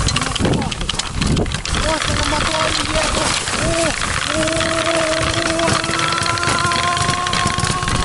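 Electric snowmobile's e-bike hub motor whining as it drives, its pitch swelling up and down several times and then holding steady and creeping slightly higher from about halfway, over a constant rough rattling and rushing noise.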